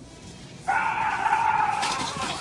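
A person's long scream of fright, starting suddenly about two-thirds of a second in and held steadily to the end.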